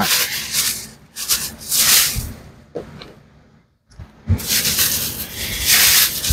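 White plastic bag rustling and crinkling as it is handled and wrapped around a bundle of items, in several bursts with a brief near-silent pause around the middle.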